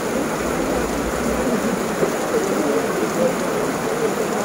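Heavy rain falling steadily.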